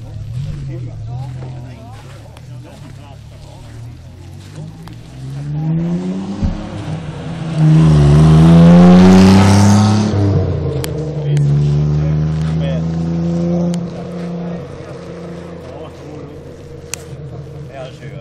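Engine of a pale green early-1950s Nash sedan running at idle, then revved up about five seconds in. It is loudest for a couple of seconds, holds at a raised speed for a few seconds, and drops back to idle near the end.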